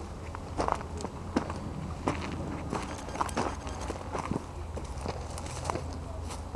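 Footsteps through dry grass and brush, with irregular crackles and snaps of dry stalks, over a steady low rumble.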